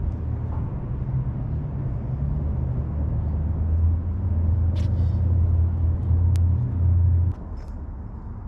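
A low, steady mechanical rumble that grows louder and cuts off suddenly about seven seconds in, with a few faint clicks over it.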